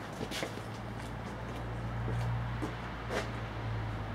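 Steady low electrical hum from the power supply driving the overvolted CRT heater, growing a little louder about two seconds in, with a few faint clicks.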